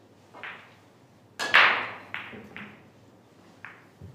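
Billiard balls clicking together at the table, a series of five sharp knocks with the loudest about a second and a half in, like balls being gathered and set for the next frame's rack.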